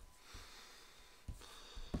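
A quiet moment with a few faint, soft taps as playing cards are picked up and laid down on a play mat.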